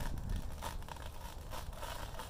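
Lace being peeled off an acrylic painting to which the dried spray paint has stuck it, coming away in several short pulls.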